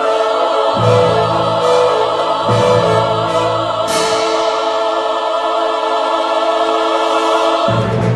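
Choral music: a choir singing long held chords. A deep bass part drops out at a bright crash about four seconds in and comes back near the end.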